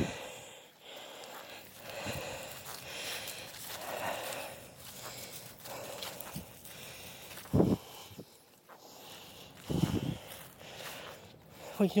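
Footsteps on grass and handling noise from a handheld camera: soft rustling, with two louder low thumps about two seconds apart in the second half.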